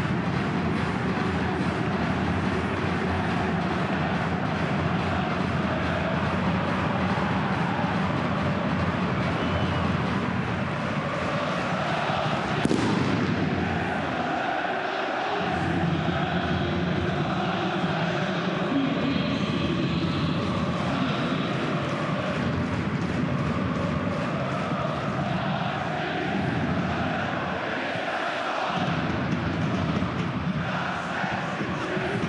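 Football stadium crowd making steady noise, with supporters' singing and chanting rising and falling in the middle. One sharp knock comes about thirteen seconds in.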